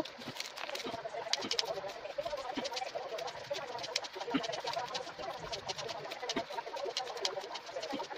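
Scissors snipping corrugated cardboard into small pieces, a quick run of crisp snips and cuts. A short laugh comes at the very start.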